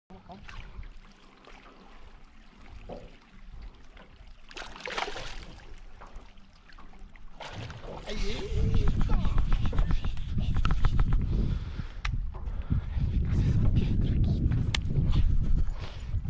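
Water splashing as a hooked fish thrashes at the surface and is scooped into a landing net beside a boat. A burst of splashing comes about five seconds in, and from about eight seconds a heavy wind rumble on the microphone takes over.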